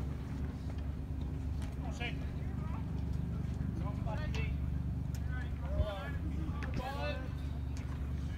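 Indistinct distant voices calling out in short bursts over a steady low rumble, with one brief knock a little before the six-second mark.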